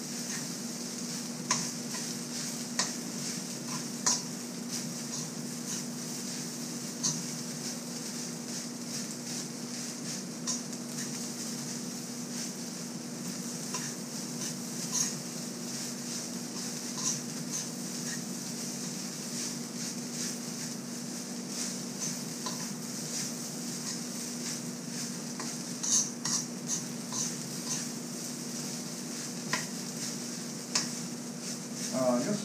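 Metal spoon scraping and clinking irregularly against a metal wok while stirring rice being fried into sinangag, over a steady sizzle and a steady low hum.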